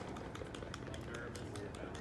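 Faint background voices of people talking quietly, over low outdoor ambience with scattered light clicks.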